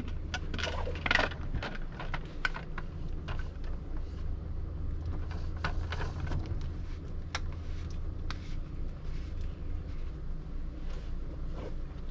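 Scattered light clicks, knocks and scrapes of plastic water-filter housings being handled, a filter cartridge set into a clear filter bowl and fitted to its cap, over a steady low hum.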